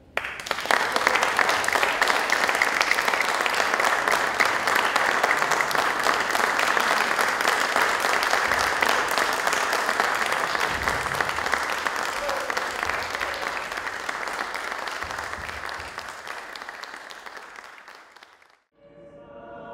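Audience applauding, a dense steady clapping that starts abruptly as the string music stops and fades out over the last few seconds.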